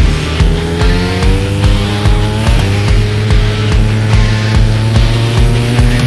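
MotoGP racing motorcycle engines accelerating hard, their pitch climbing, dropping back a few times at gear changes and climbing again. Under them runs music with a heavy, steady beat.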